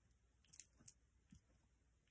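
A few light, high clicks close together about half a second in, with one faint click later.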